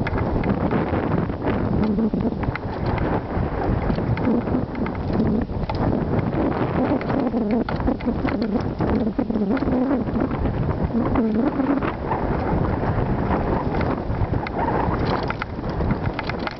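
Wind buffeting the microphone while riding a mountain bike fast down a rocky dirt singletrack, with the bike's rattle and clatter over the bumps: a steady rush dotted with many small knocks.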